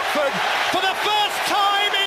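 A football commentator's raised, excited voice over a cheering stadium crowd celebrating a goal.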